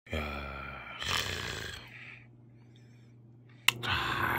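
A low, drawn-out vocal sound from a person, twice in the first two seconds, the second one breathier, followed by a faint steady hum.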